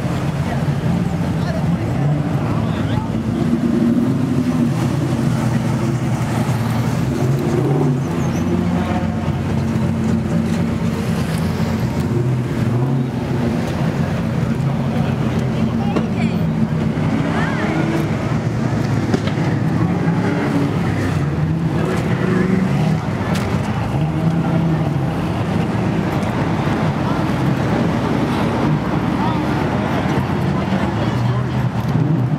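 Car engines idling steadily, with people talking around them.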